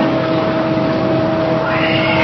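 Steady hiss-like background noise with a faint steady hum note held underneath, in a pause between speech.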